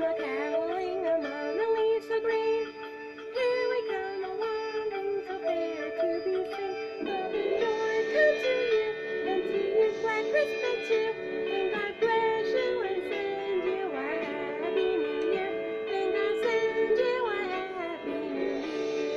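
A woman singing a Christmas song over sustained backing music, the accompaniment growing fuller about halfway through.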